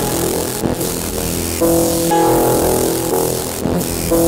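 Electronic sound-art music from a light-sensor-controlled installation, synthesised in Renoise with MicroTonic: layered held synth tones over a steady hiss, with a brighter set of held tones coming in about a second and a half in.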